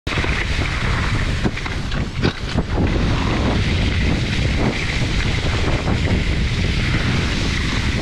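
Wind buffeting an action camera's microphone during a fast ski-bike descent, over the steady hiss and scrape of skis running on packed snow. A few short knocks come in the first three seconds.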